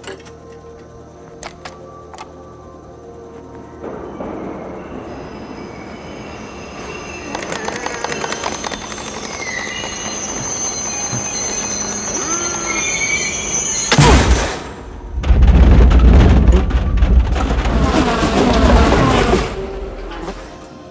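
A few clicks, then a subway train's rumble building under background music, growing very loud for about five seconds near the end.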